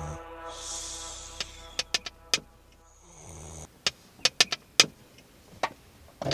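Sounds of a stopped car: a low steady engine hum for the first three and a half seconds, with a scatter of sharp clicks. After the hum stops, more clicks come in a quieter stretch.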